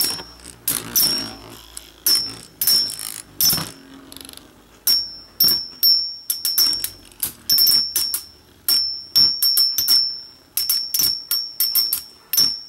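Metal Fight Beyblade tops clashing again and again as they spin in a plastic stadium: sharp irregular clicks, often several in quick succession, most leaving a brief high metallic ring.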